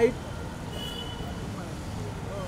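Outdoor street background: a steady low rumble of road traffic, with faint distant voices.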